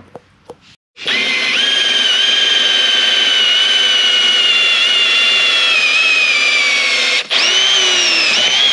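Cordless drill boring a hole through a trolling motor's mounting plate. It starts about a second in and runs steadily, its whine slowly falling in pitch as the bit bites. It stops briefly near the end, then starts again.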